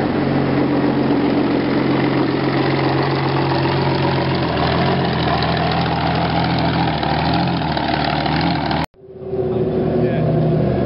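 Comet tank's Rolls-Royce Meteor V12 engine running steadily as the tank drives past and away. The sound cuts off abruptly near the end, and another tank engine fades in.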